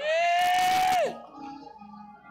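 A long held note answering the preacher's call. It slides up at the start, holds for about a second, then falls away. Faint sustained music continues after it.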